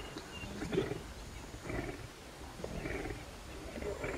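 Lions at a kudu kill giving a series of low growls, about one a second.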